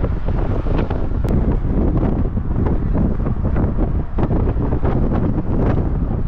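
Steady rumble of a moving car heard from inside the cabin, with wind buffeting the microphone.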